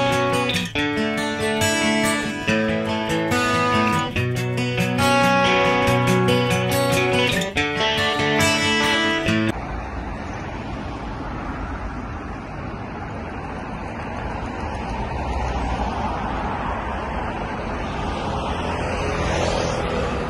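Acoustic guitar music with plucked notes for about the first nine and a half seconds, cutting off abruptly. Then steady road traffic noise from cars passing on a busy multi-lane city street.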